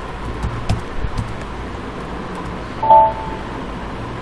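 A few scattered computer keyboard keystroke clicks over a steady background hiss. A brief pitched tone sounds about three seconds in and is the loudest thing.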